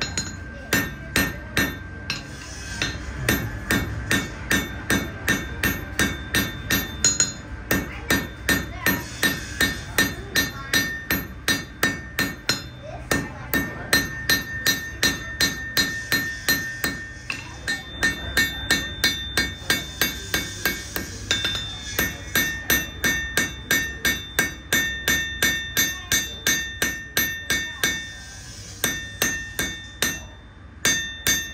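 A blacksmith's hand hammer striking a red-hot steel bar on an anvil in a steady run of about two to three blows a second, each blow ringing. The blows stop briefly near the end, then resume.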